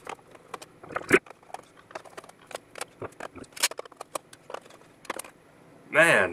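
Irregular metallic clicks, taps and knocks as screws are backed out of a sheet-metal high-voltage cover and the cover is lifted free. The loudest knock comes about a second in.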